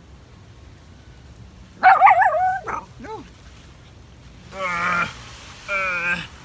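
Dogs playing, giving short yips and whines: one loud burst of cries about two seconds in, then two shorter ones near the end.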